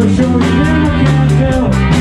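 Live rock and roll band playing: electric guitar and bass guitar over a drum kit keeping a steady beat, with some bending guitar notes.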